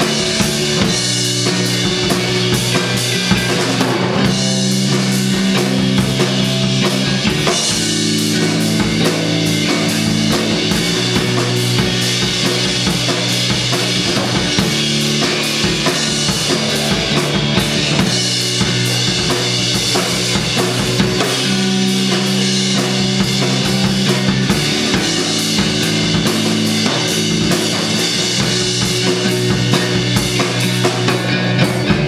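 Live post-rock played on electric guitar and drum kit: the drums keep up a steady hard-hit beat of snare, bass drum and cymbals under held guitar chords that change every few seconds.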